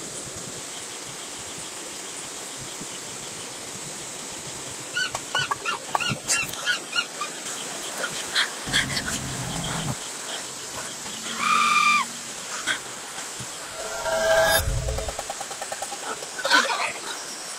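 Steady chirring of night insects, with a quick run of short animal calls about five seconds in, a longer single call near twelve seconds and a louder noisy stretch a couple of seconds before the end.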